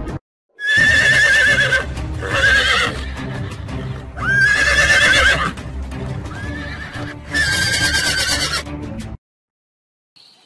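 Horses squealing as they fight: four loud, high squeals with a wavering pitch, each about a second long and a couple of seconds apart, with a fainter call between them.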